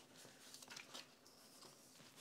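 Near silence: room tone with a few faint ticks of handling.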